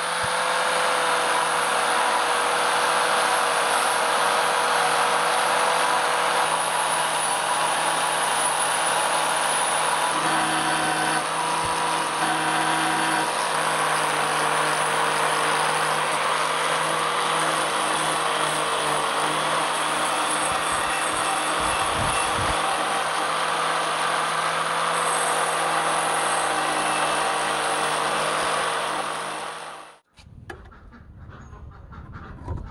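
Angle grinder running at steady speed, its abrasive disc working the steel of a motorcycle brake disc: a constant motor whine under a hiss of grinding. It comes up within the first second and cuts off suddenly near the end.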